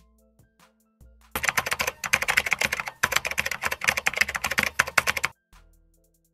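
Rapid typing on a computer keyboard, a dense run of keystrokes lasting about four seconds that starts just over a second in, with a brief pause midway. Soft background music plays underneath.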